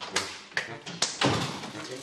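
Three sharp taps on a hard surface, the last two close together, with low, indistinct muttering between them.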